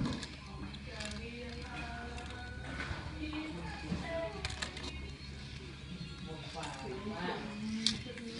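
Voices over music, with steady low tones beneath.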